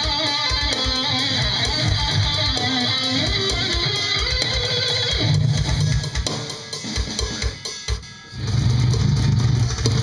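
Heavy metal music: distorted electric guitar riff over rapid, even kick-drum beats. It thins out and drops away about six to eight seconds in, then comes back with heavy low chugging guitar.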